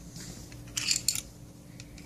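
Rigid plastic clip-on MagiClip dress being unclipped and pulled off a small plastic doll, heard as a short cluster of plastic scraping clicks about a second in.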